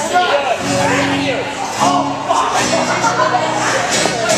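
Guitars strumming chords, starting about half a second in and changing chord every second or so, over the chatter of a bar crowd.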